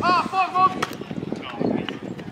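Players shouting during a flag football play, loudest in the first half second, with one sharp slap a little under a second in.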